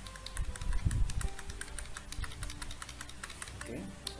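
Computer keyboard keys clicking in a quick, even run, several presses a second, as a cell selection is extended across a spreadsheet. A short low bump comes about a second in.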